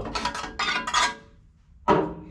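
Metal clattering and rattling for about a second as a floor-mounted shifter assembly is gripped and moved by hand, then a short sharp sound near the end.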